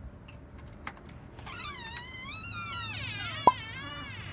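Door hinges creaking as the front door swings open: a long wavering squeal that starts about a second and a half in. A single sharp knock near the end is the loudest sound.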